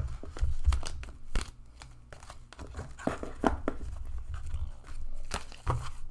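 A tarot deck being shuffled by hand: a quick run of papery card slaps and rustles, mixed with low thuds of handling.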